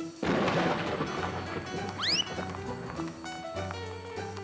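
Cartoon crash sound effect about a quarter second in, fading out over about a second, then a short rising whistle about two seconds in, over background cartoon music.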